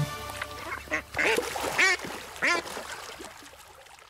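A duck quacking about four times, the calls spaced roughly half a second apart.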